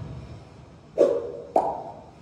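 The end of a student brass-and-percussion ensemble's final chord dying away, then two short, hollow knocks about half a second apart, each with a brief ringing pitch.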